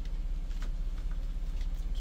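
A steady low hum with a few faint, short clicks and rubs of small plastic sensing tubing being pushed onto a fitting on an LTV-1200 ventilator.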